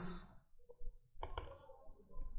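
A short breath out at the very start, then near silence broken by a faint click a little over a second in.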